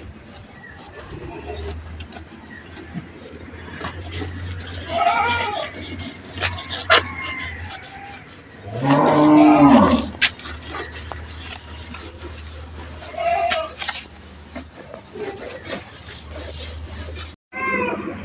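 Livestock calling: one long, deep call about nine seconds in, the loudest sound, with shorter, higher calls around five and thirteen seconds.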